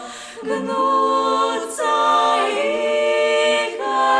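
Female vocal quartet singing a cappella in close harmony, holding long notes that move together. The sound dips briefly right at the start, then the voices come back in.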